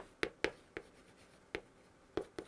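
Chalk on a chalkboard as characters are written: about five short, sharp taps and strokes at uneven intervals, the last about a second and a half in.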